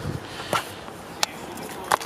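Handling of a leather document wallet and the papers inside it: a few short, light clicks and rustles, the sharpest near the end.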